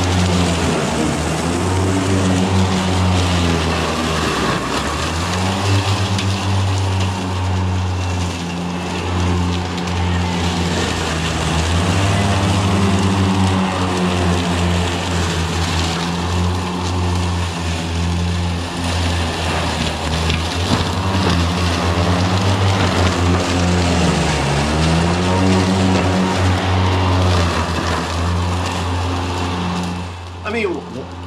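Ego Z6 battery-powered zero-turn mower running steadily with an electric hum while cutting thick, tall grass. Its pitch dips briefly and recovers twice, about 4 and 24 seconds in, as the blades load up in the dense grass.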